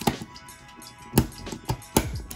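Background music with a beat: steady tones under sharp drum hits, the loudest about a second in, two more near the end.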